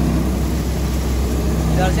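Tractor-driven wheat thresher running steadily: a low, even engine hum under the loud rushing noise of the threshing machine.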